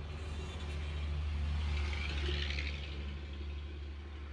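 Low motor-vehicle rumble that swells to a peak about halfway through and then eases off, with a brief hiss near the peak.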